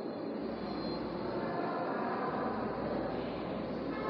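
Steady background noise with no distinct events, a low even hiss and hum.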